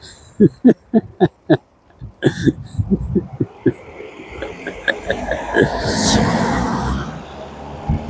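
A man laughing in short, evenly spaced bursts, followed by a car driving past close by, its tyre and engine noise swelling to a peak about six seconds in and then fading.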